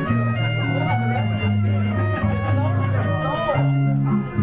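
Small jazz combo playing live: clarinet, acoustic guitar and violin over a low bass line that moves note to note.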